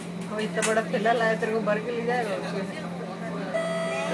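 Voices and laughter inside an MRT train carriage over the steady hum of the train. A steady held tone starts near the end.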